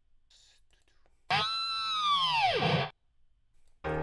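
Guitar-effects 'scream' sample played back: one loud note with many overtones, sliding down in pitch for about a second and a half before cutting off. Near the end a sustained keyboard chord begins.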